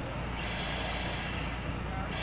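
Self-contained breathing apparatus regulator hissing as air flows into the face mask on an inhalation, one hiss about a second long starting about half a second in.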